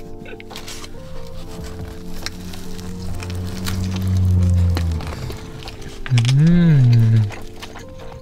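Background music with steady sustained notes. Over it a man hums with his mouth full while eating: a long low 'mmm' in the middle, and a shorter 'mmm' near the end that rises and falls in pitch.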